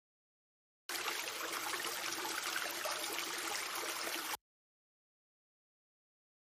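Running-water sound effect for washing dishes: a steady rush of water that starts abruptly about a second in and cuts off suddenly some three and a half seconds later.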